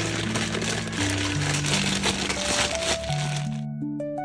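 Crinkling and crackling of a plastic bag of mini marshmallows being emptied into a pan of melted butter, over background music. The noise cuts off abruptly near the end, leaving only the music.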